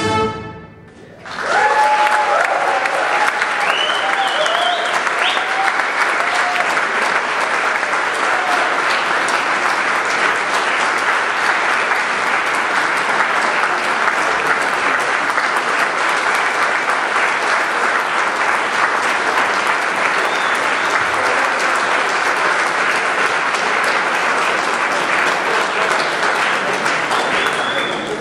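A big band's last chord cuts off, and after about a second's pause the audience applauds steadily, with a few cheers and whistles in the first seconds.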